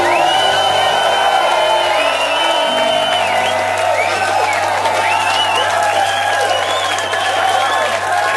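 A live band's final chord ringing out on a held low bass note while the audience applauds, cheers and whistles.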